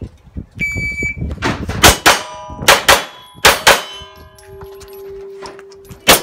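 Shot timer start beep, then about six pistol shots fired in quick pairs, with steel targets ringing after the hits.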